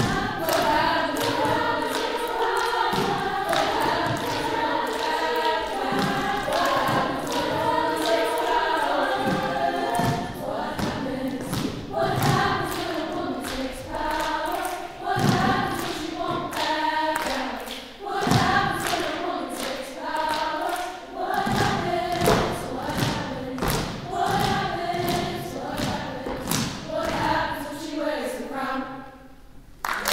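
Women's choir singing a cappella in close harmony, with sharp percussive thumps beating through the song. The singing ends near the end.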